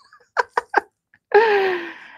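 A woman's voice without words: three quick short laughs, then a longer breathy sound that falls in pitch.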